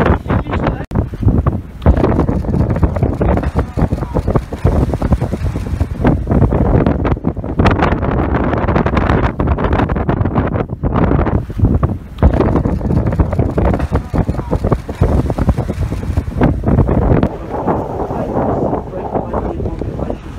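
Strong wind buffeting the microphone in uneven gusts, a loud rumbling flutter that covers everything else.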